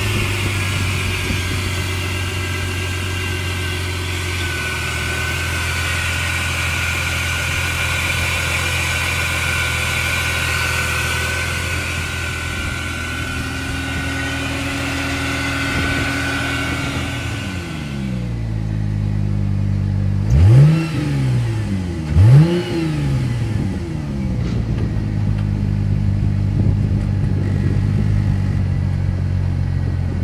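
1999 Plymouth Prowler's 3.5-litre 24-valve V6 idling steadily, heard first at the open engine bay and, from a little past halfway, from the exhaust. About 20 and 22 seconds in, the throttle is blipped twice, each rev rising quickly and falling back to idle.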